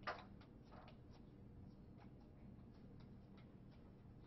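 Near silence in a room with a steady low hum; a single sharp click just after the start, then faint scattered ticks.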